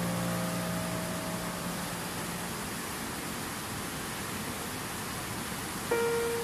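Steady rushing of stream water. A piano chord fades out over the first two seconds, and a new piano note comes in at the very end.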